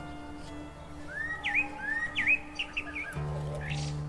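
A bird chirping, a run of short rising calls between about one and three seconds in, over background music with held, sustained tones.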